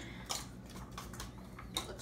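Hand stirring moistened dry dog kibble in a stainless steel bowl: soft crunching and rustling with a few sharper clicks, the clearest about a third of a second in and again near the end.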